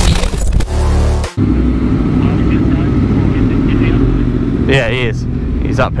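Electronic music cuts off about a second in. A Yamaha MT-10's crossplane inline-four engine then runs steadily at low speed.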